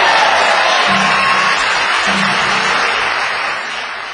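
Logo sting music: a loud, noisy wash of sound with two short low notes about one and two seconds in, slowly fading toward the end.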